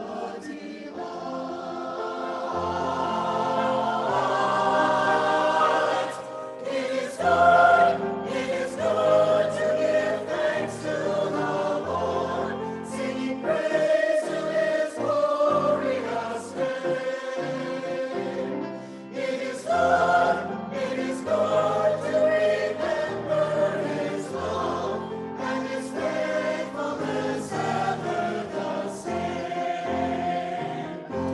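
Small mixed church choir, men's and women's voices together, singing in parts with sustained, slowly changing chords.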